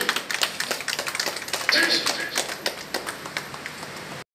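Scattered hand clapping from a small audience, many quick irregular claps, with faint voices in the background.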